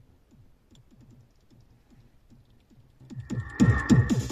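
Background electronic dance music with a steady kick drum and light ticking percussion, faint at first and turning much louder about three seconds in.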